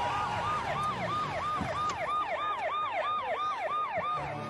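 Emergency vehicle siren sounding a fast wail: each cycle rises sharply and then falls, about three times a second, over a low rumble of vehicles.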